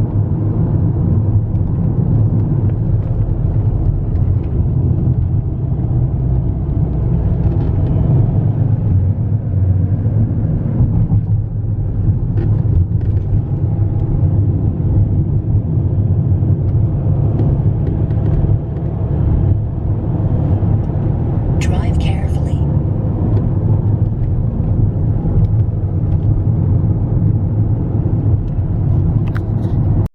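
Road noise inside a moving car's cabin: a steady low rumble of engine and tyres, with a brief hiss a little after two-thirds of the way through.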